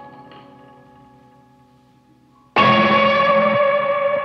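Pencilina, a homemade electric string instrument struck with sticks and played through effect pedals: a ringing chord fades away, then about two and a half seconds in a sudden loud struck chord rings on.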